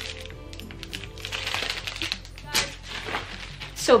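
Soft background music with the crinkling of plastic packaging, protein-bar wrappers and a ziplock bag, being handled, loudest around the middle.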